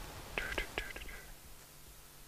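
A man's quiet whispered muttering, a few soft syllables about half a second in, then faint room tone.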